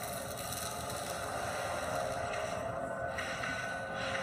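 Power tool grinding metal, throwing sparks: a steady hissing noise under soundtrack music.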